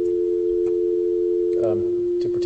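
Electronic sine tones from a Pure Data delay-line pitch shifter: two steady pure tones about a major third apart, the lower one a 440-cycle sinusoid transposed down a major third by a delay swept once a second. A voice begins faintly near the end.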